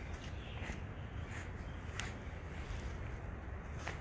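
Quiet outdoor background with low wind rumble on the microphone, and a single sharp click about two seconds in.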